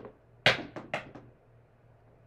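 A pair of dice thrown onto a felt craps table: a faint click at the start, then a sharp knock about half a second in as they strike, followed by three quicker, lighter knocks as they bounce and come to rest.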